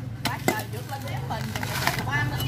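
Blade chopping into a green coconut's fibrous husk: a few sharp, separate chops, two close together near the start and another near the end.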